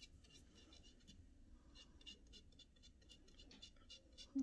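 Faint scratching and little irregular ticks of a paintbrush stroking and dabbing paint onto a wooden cutout, coming more often in the second half.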